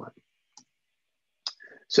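A single sharp click about one and a half seconds into a pause in the talk, from a handheld presentation clicker advancing the slide.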